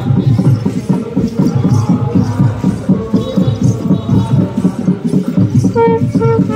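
Traditional processional music: drums beaten in a fast, steady rhythm, with a pitched wind-instrument melody that comes up strongly near the end.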